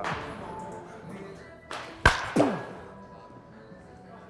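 A baseball bat striking a pitched ball: one sharp crack about two seconds in, just after a fainter click.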